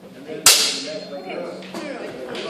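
A single sharp crack of a training sword striking in sword-and-shield sparring, about half a second in, followed by a brief ringing tail.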